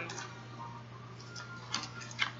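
A few faint clicks and taps from handling card and paper packaging, over a steady low electrical hum.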